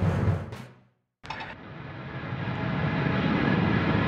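A music track fades out in the first second. After a brief silence, the engine noise of an Antares rocket climbing after launch comes in, growing steadily louder.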